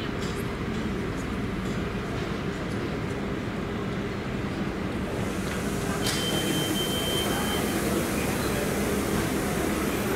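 Steady hum of a standing passenger train's electrical and ventilation equipment, with a thin high whine from about six seconds in lasting a couple of seconds.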